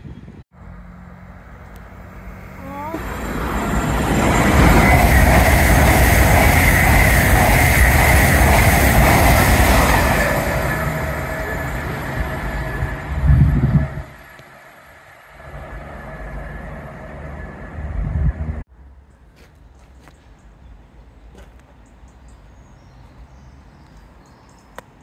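Trains passing a station platform in cut-together clips: a Class 66 diesel locomotive and its freight train pass loudly for about six seconds, then an LNER Azuma express comes through. The sound cuts off suddenly after about eighteen seconds, leaving only faint outdoor background.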